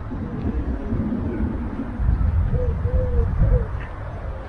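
A bird's three-note hooting call about two and a half seconds in: a short note, a longer one, then a short one. It sits over a steady low rumble.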